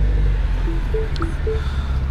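Mini Cooper S John Cooper Works turbocharged 1.6-litre four-cylinder idling steadily just after start-up, heard from inside the cabin. Over it a dashboard warning chime sounds several short notes alternating between two pitches.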